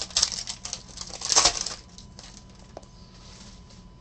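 Foil wrapper of a trading-card pack crinkling as it is torn open, loudest about a second and a half in, then dying down to faint rustling and a few light ticks.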